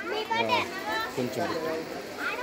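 Background chatter of several voices talking at once, children's voices among them.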